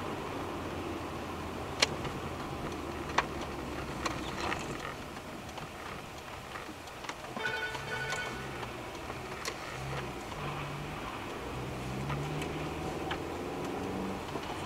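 Steady engine and road noise inside a moving car, picked up by a dashcam, with music playing faintly over it. Two sharp clicks sound in the first few seconds.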